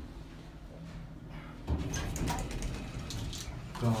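Otis traction elevator car doors sliding open on arrival at the floor, a sudden noisy start about halfway through that carries on for about two seconds.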